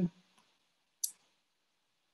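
Near silence with a single short, sharp click about a second in.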